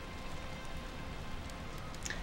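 Steady rain ambience: an even hiss with faint scattered drips.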